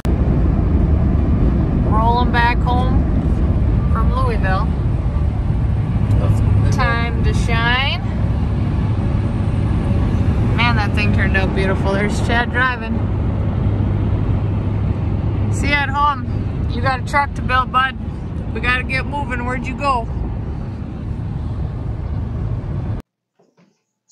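Steady road and engine rumble inside a car's cabin at highway speed, with voices talking now and then over it. The rumble cuts off suddenly about a second before the end.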